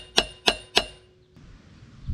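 Seal installer tool being tapped to drive a new wheel seal into a brake drum hub, seating it slightly below flush: three quick metallic taps about a third of a second apart, each ringing briefly, then the tapping stops.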